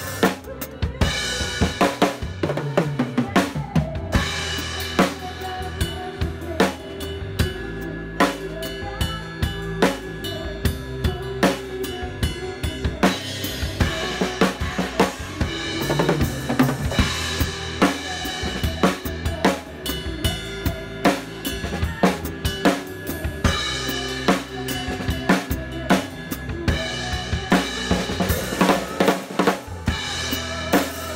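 Drum kit played live with a full band: bass drum, snare and cymbal hits in a steady groove, with the band's sustained instrument tones underneath.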